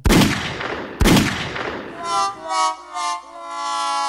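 Two handgun shots about a second apart, each with a trailing echo, followed by a short horn-like tune of several stepped notes.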